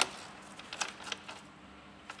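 A few faint, short clicks as a socket on an extension bar nips down a screw holding the engine-bay shield, over a faint steady hum.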